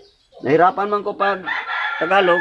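A rooster crowing, starting about half a second in: a few short broken notes, then a long drawn-out final note.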